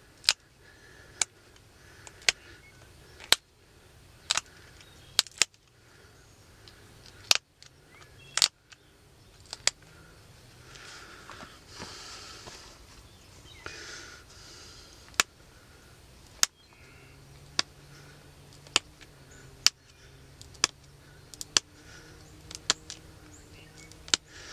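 Sharp clicks at irregular intervals, roughly one a second, of small flakes snapping off a stone arrowhead as its edges are pressure-flaked with a hand tool, the stone held in a leather pad.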